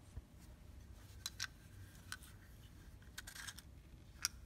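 Faint clicks and light taps of tools being handled on a wooden workbench, over quiet room tone, with a short cluster of clicks about three seconds in.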